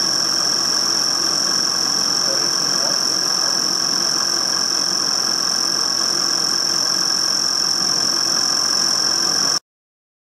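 CNC milling machine cutting a metal plate with an end mill under flood coolant: a steady, high-pitched whine over the running spindle that cuts off suddenly near the end.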